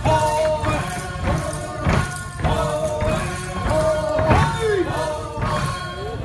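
Traditional Naga folk song sung by a group in long held notes, with heavy thuds every second or two under it.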